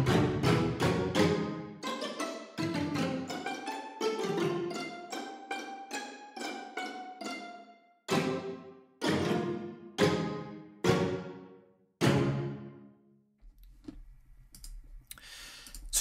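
Sampled orchestral string stabs from the 'String Stabs' preset of Steinberg's Materials – Wood & Water, played from a keyboard. The preset by default layers string staccato, pizzicato and col legno into short, percussive chords. A quick run of notes is followed by separate stabs about a second apart, which stop a few seconds before the end, leaving a faint low hum.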